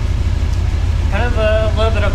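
1964 Dodge Custom 880's big-block V8 idling: a steady, loud low rumble with fast even pulses.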